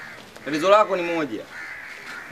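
A man's voice making one drawn-out exclamation, about a second long, rising then falling in pitch.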